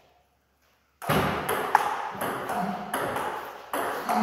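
Table tennis ball being struck back and forth in a rally. Sharp clicks of ball on paddles and table come in quick succession, starting about a second in.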